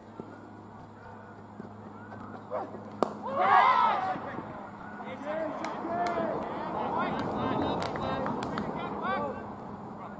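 A single sharp crack of the cricket ball off the bat or pads about three seconds in. Straight after it come loud shouts from the fielders, then several voices keep calling out, with scattered sharp clicks among them.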